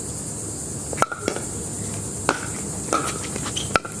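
Pickleball rally: paddles hitting a plastic pickleball, with a sharp hollow pop about a second in and about five more over the next few seconds, each with a short ring after it.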